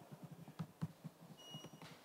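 Faint laptop keyboard keystrokes, an irregular string of soft clicks as a terminal command is typed, with a short high beep about one and a half seconds in.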